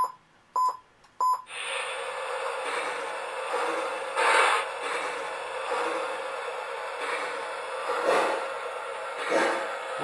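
Three short electronic beeps in the first second and a half, then a Lionel three-rail O-gauge toy train starts running, its wheels and motor making a steady rolling noise on the track with a few brief swells.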